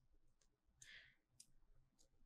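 Near silence: room tone with a few faint, short clicks around the middle.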